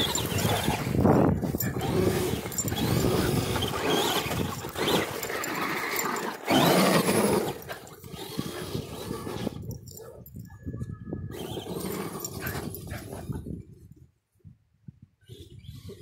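Traxxas Stampede electric RC monster truck on new snow tires driving hard over crusty snow: motor whine and tyres churning the snow. It is loud for the first seven seconds or so, then fades away as the truck drives off, nearly gone by the end.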